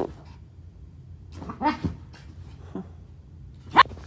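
Black toy poodle whining, a pitched wavering call and a shorter one, then a single short, sharp yip near the end.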